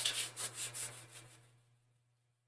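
Hands rubbing an adhesive silk-screen transfer down onto a painted cutout: a soft, dry swishing in quick strokes, about four or five a second, that stops about one and a half seconds in.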